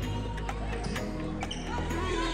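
Indoor volleyball rally: a few sharp hits of the ball and footfalls on a hardwood gym floor, with music playing underneath.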